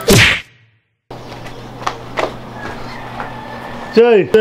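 A short, loud whoosh right at the start, cut off into dead silence. Then a quiet background with a steady low hum and two faint clicks.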